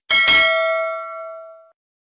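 A click followed by a single bell ding that rings on and fades away over about a second and a half. It is the notification-bell sound effect of a subscribe-button animation, playing as the bell icon is clicked.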